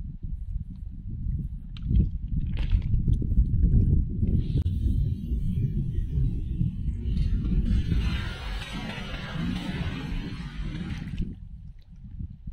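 Wind buffeting the microphone with a steady low rumble. A hissing splash of water builds in the second half as a thrown nylon cast net lands and sinks, and it stops abruptly near the end.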